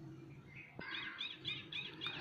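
A bird chirping faintly: a quick run of about five short, repeated high notes starting a little under a second in.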